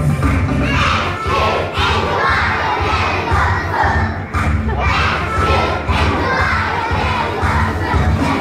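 Many children's voices raised loudly together over amplified music with a heavy bass.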